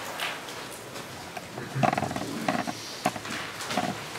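Scattered knocks, shuffles and rustles over the hall's room noise, from a person walking up to a lectern and settling at its microphone.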